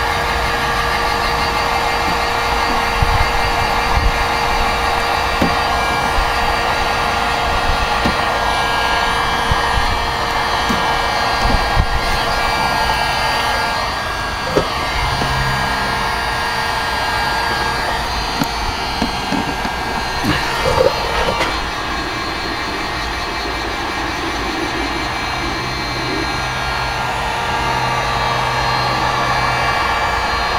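A 1500-watt electric heat gun running steadily, its fan blowing with a whine of several steady tones. A few short knocks come through, and the sound drops a little for several seconds after the middle.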